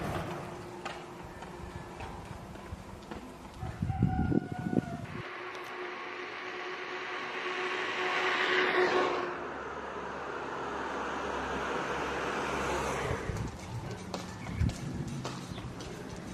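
A vehicle passing along a street: its noise swells to a peak about halfway through and dies away by about three-quarters through, over steady outdoor background noise.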